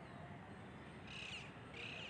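Two short, faint bird calls over low background hiss.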